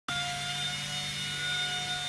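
Steady machine hum made of a low drone and higher whines held at fixed pitches, with no other event.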